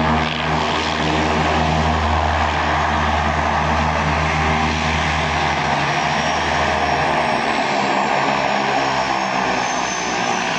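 de Havilland Canada DHC-6 Twin Otter's two Pratt & Whitney PT6A turboprop engines running as the aircraft taxis and turns on a grass strip: a steady, loud propeller drone with a hiss over it. The low propeller hum weakens a few seconds before the end, and a faint high turbine whine comes up.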